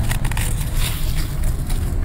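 Stiff gift ribbon crinkling and rustling as it is handled and pulled out to length, with a few short crackles near the start and about a second in, over a steady low background rumble.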